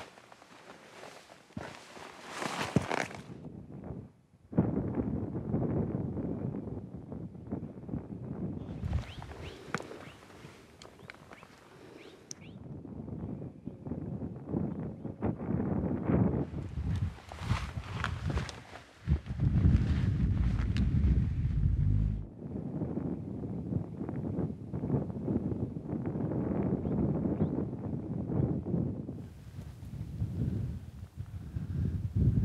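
Boots stepping and scuffing on rock and dry brush during a climb, with scattered sharp clicks, and long stretches of low rushing noise.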